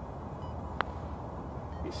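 Odyssey Stroke Lab 10 putter striking a golf ball once on a putt: a single sharp click a little under a second in, over a steady low background rumble.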